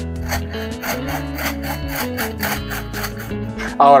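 Background music over a rhythmic, scratchy rasping of a metal hand-crank flour sifter, several strokes a second, as flour is sifted into a bowl.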